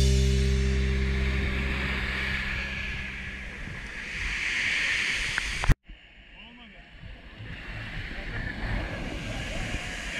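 Sea waves breaking and washing up a beach, the surf swelling about four seconds in. Over the first few seconds the closing notes of a piece of music ring out and fade; after an abrupt cut near the middle, the surf comes back quieter and builds again.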